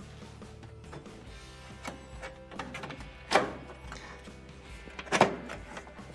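Faint background music, with two sharp knocks about three and five seconds in as the range's metal console panel is swung over and set onto the back of the stove frame.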